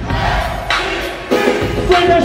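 Hyphy hip hop beat played loud over a club sound system, with heavy bass and crowd voices shouting over it.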